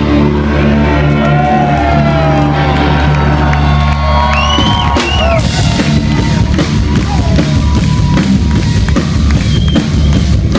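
Live rock band on electric guitars, bass and drum kit: a held, bass-heavy chord with high gliding tones over it, then about halfway through the drums come in hard with a fast, steady beat.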